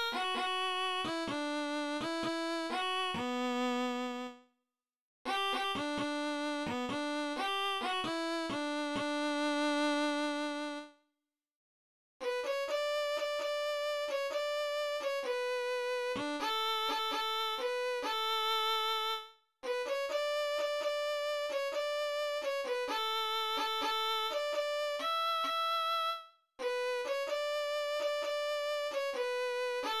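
Solo violin melody, a single unaccompanied line, played back note for note from the score by notation software. Its phrases are cut by short, dead-silent gaps.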